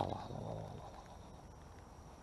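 A man's drawn-out exclamation of "oh", falling in pitch and trailing off into a low hum over about the first second, then only faint outdoor background.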